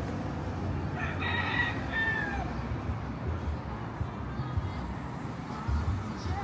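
A rooster crowing once, starting about a second in: one call of about a second and a half that falls in pitch at its end, over a steady low background rumble.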